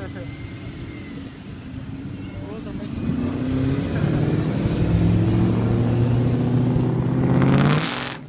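Ford Mustang engine as the car accelerates past, loudest in the second half and cut off abruptly at the end.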